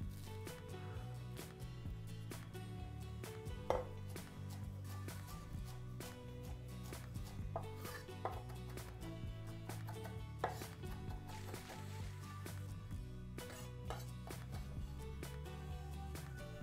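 Chef's knife chopping fresh parsley on a wooden end-grain cutting board: a long run of quick, irregular taps. Soft background music runs underneath.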